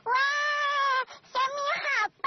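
A high, pitch-shifted character voice making a wordless vocal sound: one long held note of about a second, then a shorter call that rises in pitch.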